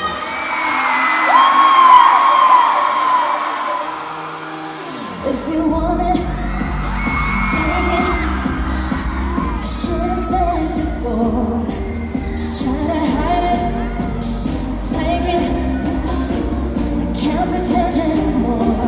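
Live pop song: a woman's voice singing over light backing, then about five seconds in the bass and a steady dance beat come in under the vocals.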